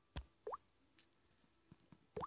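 Near silence, broken by a faint click and then a short rising blip about half a second in.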